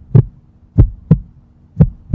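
Deep double thumps in a heartbeat rhythm, one pair about every second, over a faint steady low hum.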